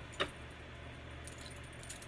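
A steady low hum with a single sharp click about a quarter second in, then faint light clinks near the end from bracelets on moving wrists.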